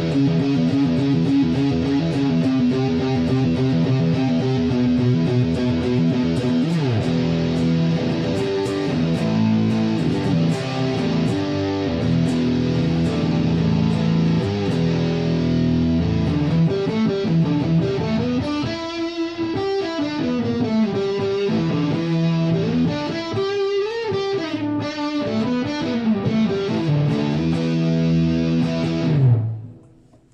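Epiphone Les Paul electric guitar on its bridge pickup, played through one of the Boss GT-1000's overdrive/distortion types and heard from studio monitors: sustained driven chords and notes, with bent, wavering notes in the second half. The playing cuts off suddenly just before the end.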